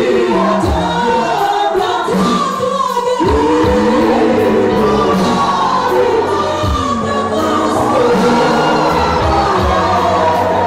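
Gospel worship team singing live through microphones and a PA, several voices together in a steady, loud choral sound.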